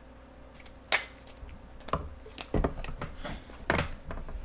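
A deck of tarot cards being shuffled by hand: a few sharp card snaps and slaps, the loudest about a second in, with a quicker cluster in the second half.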